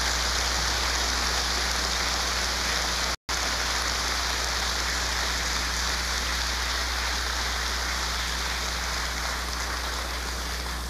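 Audience applause in a legislative chamber: a steady, dense clatter with a low electrical hum underneath. It cuts out for an instant about three seconds in.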